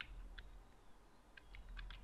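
Faint keystrokes on a computer keyboard as a short word is typed: about six light clicks, one at the start, one soon after and four in quick succession near the end.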